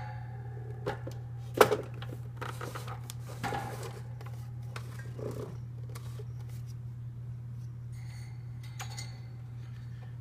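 Handling noise from an old plastic oscillating desk fan being moved and its cord freed: scattered knocks and rustles, the sharpest knock about one and a half seconds in, over a steady low hum.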